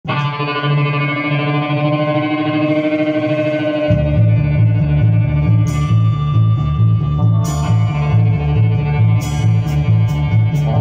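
Live rock band rehearsing. Electric guitar plays sustained notes alone, then about four seconds in the drums and a low, pulsing bass line come in with a steady beat, with a cymbal crash every couple of seconds.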